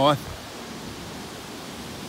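Steady, even rush of the Androscoggin River's water, a hiss with no rhythm, after a man's voice ends a word at the very start.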